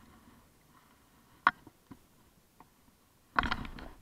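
Handling noise: one sharp click and a few faint ticks, then a brief rustling clatter near the end as a fishing rod is picked up off the grass.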